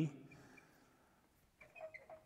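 Quiet room tone after a man's voice trails off, with a few faint short clicks and brief blips in the second half.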